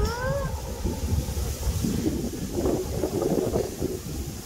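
Wind buffeting the microphone in low, uneven gusts, with a high voice's drawn-out rising call trailing off in the first half-second.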